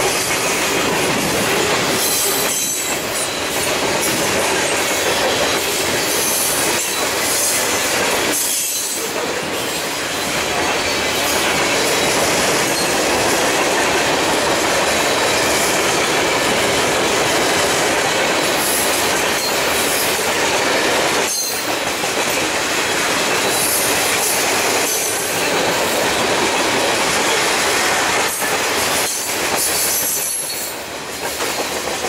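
Freight cars of a mixed train (tank cars, boxcars and covered hoppers) rolling past close by: a loud, steady rush of steel wheels on the rails, with a few brief dips.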